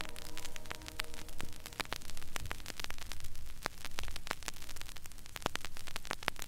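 The last held pianissimo chord of a string quartet's slow movement fades out about two seconds in. What follows is the gap before the next movement, filled with crackling static and many scattered clicks.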